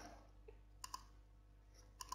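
Near silence with faint room hum, broken a little under a second in by two quick, faint clicks close together.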